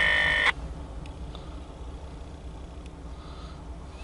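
A railroad scanner radio's loud, shrill tone cuts off sharply about half a second in. It is followed by a low steady rumble from the CSX locomotive creeping slowly toward the crossing.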